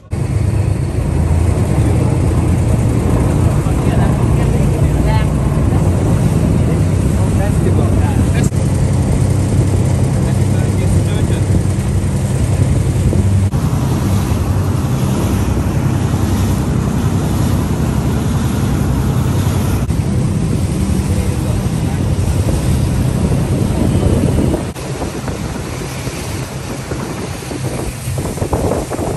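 Motorized tourist boat under way, its engine running steadily, with wind buffeting the microphone and water rushing past the hull. The sound drops somewhat about 24 seconds in.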